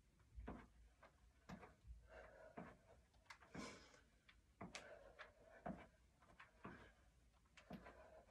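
Near silence, with faint soft thuds about once a second: sneakers stepping and landing on a rubber gym floor during side-to-side push kicks.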